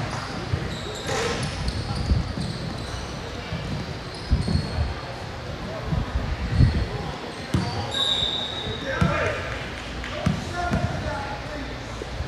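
Basketball bouncing on a hardwood gym floor in irregular thumps, with voices of players and spectators echoing in a large hall and a brief high-pitched squeak or whistle about eight seconds in.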